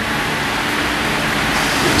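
Steady, even hiss of background room noise, growing slightly louder through the pause.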